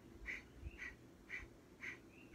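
Rapid rhythmic breathing through the nose, Kundalini breath of fire, with short forceful exhales at about two a second and a faint short whistle between some of them.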